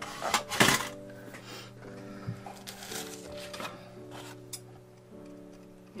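Scissors cutting watercolour paper, with the loudest snipping about half a second in and a few shorter cuts around the middle. Soft background music with held tones plays throughout.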